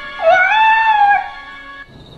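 A woman's long, high wailing sob that rises and is held for about a second, over soft background music that stops near the end.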